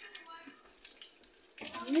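Hot cooking oil sizzling faintly in a frying pan, with a light crackle, as croquettes fry. A voice exclaims near the end.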